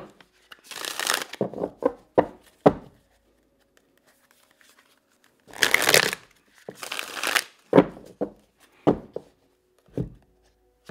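A deck of tarot cards being shuffled by hand in short bursts, each followed by a few quick taps of the cards, with a pause of a couple of seconds in the middle.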